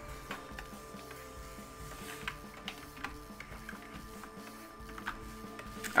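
Soft background music with steady held tones, under light scratching and tapping of a stylus pen on a Wacom Cintiq pen display.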